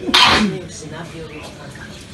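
A sudden short, loud burst of breath and voice from a person, falling in pitch, just after the start, like a sneeze.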